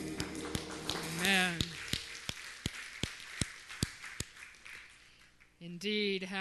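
Hand claps in a steady beat, about two and a half a second, over a faint murmur, dying away after about four seconds. A voice calls out briefly about a second in, and a voice begins speaking near the end.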